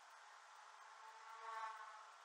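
Near silence: a faint steady hiss, with a brief faint pitched sound swelling and fading about a second and a half in.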